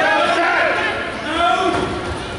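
Spectators' voices talking and calling out across the gym.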